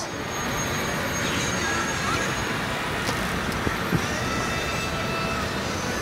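Steady city traffic noise.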